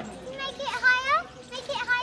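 High-pitched voices speaking and calling out, a child's among them.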